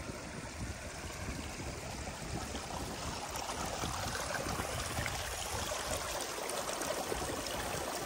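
Steady rushing of a mountain stream: an even, continuous hiss of flowing water with no break.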